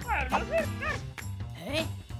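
Cartoon characters' wordless, squeaky voices: several short exclamations gliding up and down in pitch. Background music with a steady low bass plays underneath.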